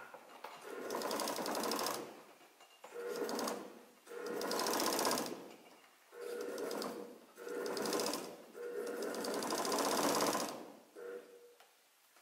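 A straw-hat sewing machine stitching plaited straw braid into a hat. It runs in about six short bursts of one to two seconds, with brief pauses between them as the hat is turned and fed.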